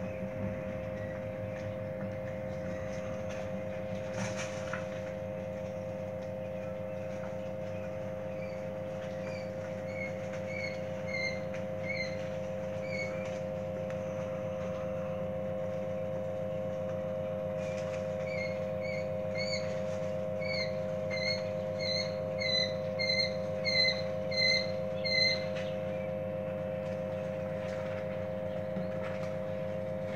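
Quail chicks peeping: a run of short repeated peeps about a third of the way in, then a louder run of about two peeps a second in the second half. A steady low hum runs underneath.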